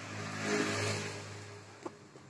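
A motor vehicle passing: an engine hum with road noise that swells to its loudest about a second in and then fades. A small click near the end.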